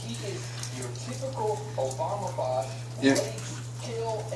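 A small dog eating egg and dog food quickly from a stainless steel bowl: wet chewing and licking with small clicks, over a steady low hum.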